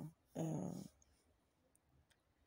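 A woman's voice giving a single drawn-out hesitation, "euh", lasting about half a second, then near silence.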